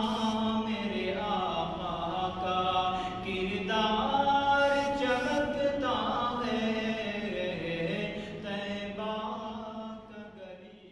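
A man reciting an Urdu naat (devotional praise of the Prophet) unaccompanied into a microphone. He holds long, melismatic notes that slide up and down over a steady low drone, and the sound begins to fade near the end.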